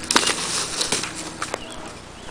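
A person falling onto dry leaf litter and twigs: a scuffling crunch on the ground lasting most of a second, followed by a few scattered snaps.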